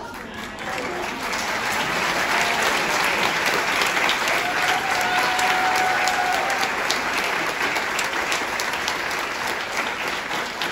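Audience applause: many hands clapping, building up over the first couple of seconds and then holding steady.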